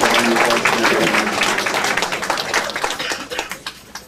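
Audience applauding, with laughter and voices mixed in; the clapping fades away near the end.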